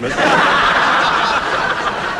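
Studio audience laughing loudly. The laughter sets in suddenly and eases a little towards the end.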